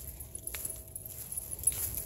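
Light metallic jingling, a little stronger near the end, with a single click about halfway through.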